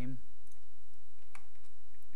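About three sparse, faint clicks of computer keyboard keys and a mouse while text is typed into a program.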